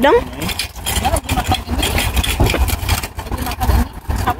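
A low, fluctuating rumble with scattered faint knocks and brief, faint voice fragments.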